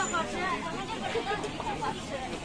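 Background chatter: several people talking around a street-food stall, no words clear, over a general hubbub.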